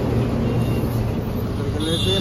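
Loaded multi-axle goods truck driving past close by, its diesel engine a steady low drone over roadside traffic noise. A brief high-pitched tone sounds near the end.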